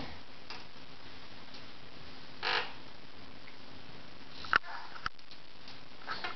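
Baby bouncing in a doorway jumper: a short breathy huff from the baby about halfway through, then two sharp clicks near the end, over a steady faint room hum.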